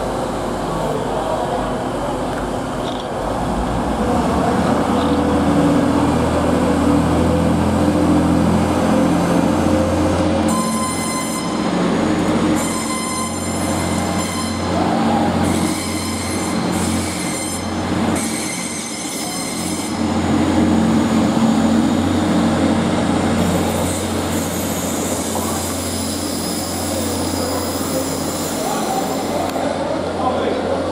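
TransPennine Express Class 185 diesel multiple unit pulling away from a station platform, its Cummins diesel engines steady at first and then opening up about four seconds in. From about ten seconds in the wheels squeal in high, broken bursts as the train rolls away, with more high squealing near the end.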